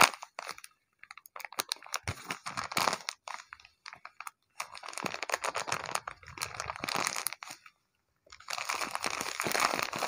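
Hands squeezing and crumpling a handmade paper blind bag: crisp paper crinkling in several bouts with short pauses between.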